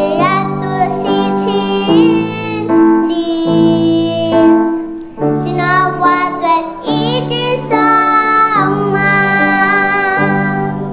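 A young girl singing a song while accompanying herself with held chords on a Yamaha MX88 keyboard.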